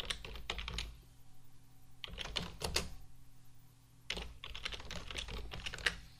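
Typing on a computer keyboard in three quick bursts of keystrokes with short pauses between, the last burst ending in one louder keystroke.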